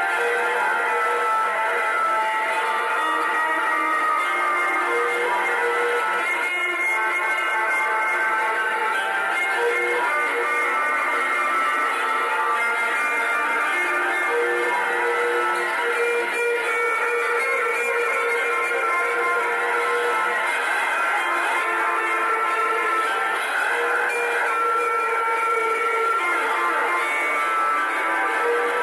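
Live instrumental music of long, held, overlapping electric notes, played on an electric bass through effects pedals. It was recorded straight off the mixing console, and the level is steady.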